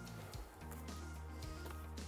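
Faint background music, a soft bed of steady held notes.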